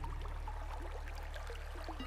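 Trickling, bubbling water, like a small stream, over the low held notes of calm background music that are dying away.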